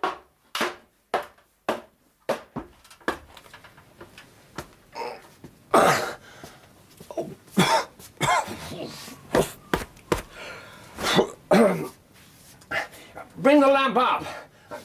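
Sound effects of a man climbing a ladder: a run of short knocks from feet on the rungs in the first few seconds, then his short grunts and coughs of effort mixed with further knocks.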